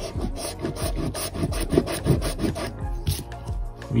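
A coin scratching the latex coating off a lottery scratch-off ticket in quick, repeated rasping strokes, about five or six a second.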